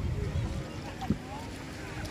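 Wind buffeting the microphone on an open beach: a low, uneven rumble, with a single short knock about halfway through.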